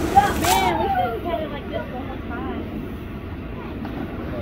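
A splash of water into an inflatable water slide's pool at the start, with children's voices calling out briefly over a steady rushing noise from the slide's blower fan and the spraying hose.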